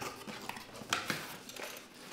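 Handling noise from computer parts and their packaging: a few light clicks and taps, the sharpest about a second in.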